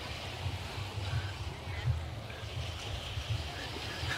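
Wind buffeting the phone's microphone in an uneven low rumble, over a steady wash of surf on the beach.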